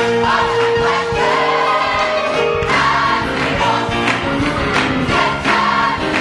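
Large mixed church choir singing a Pentecostal gospel song, sustained full-voiced harmony over a steady beat.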